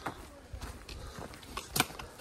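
A hiker's footsteps on a leaf-strewn forest trail: a few irregular crunches and knocks, the loudest near the end, over a low rumble of wind and handling on the hand-held camera.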